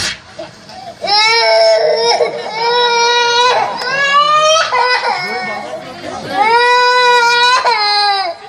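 Loud theatrical wailing in a high voice, like a sobbing child: three long, held cries of one to two and a half seconds each, with short breaks between them.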